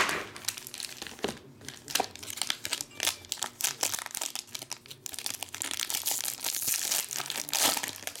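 Foil wrappers of 2017 Bowman Chrome Mini card packs crinkling and tearing as they are opened by hand. A loud snap comes at the start, then a run of sharp crackles, and the crinkling grows denser in the last couple of seconds.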